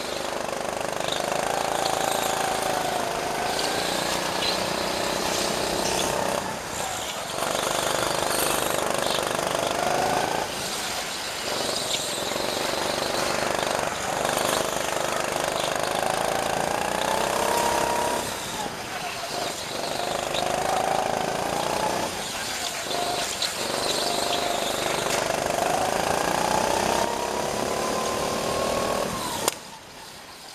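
Go-kart engine heard onboard at speed, its pitch climbing as the kart accelerates along each straight and falling away as it slows for the corners, five times over. The engine note drops sharply just before the end.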